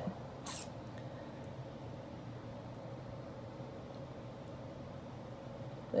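Quiet room tone: a faint steady hum, with one brief soft hiss about half a second in.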